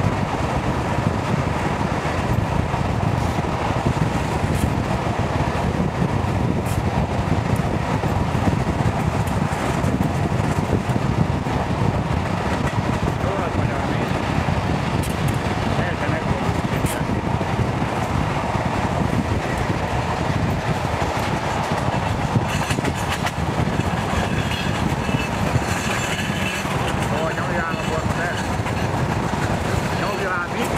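A passenger train running at speed, heard from an open carriage window: a steady, loud rumble of the wheels on the track with the rush of the air.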